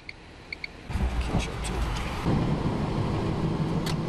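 Two short electronic beeps about half a second in. From about a second in, the steady rumble of a car driving, heard from inside the cabin, with a steady engine hum joining at about two seconds in.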